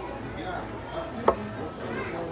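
One sharp knock, like a hard object striking a table or tray, about a second in, over faint background voices in a busy dining room.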